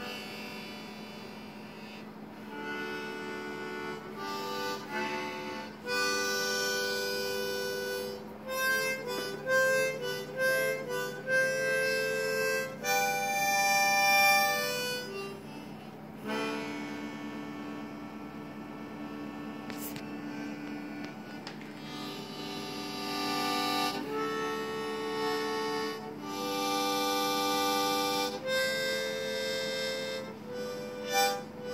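Harmonica playing: long held chords and single notes, with a run of short, quick notes in the middle.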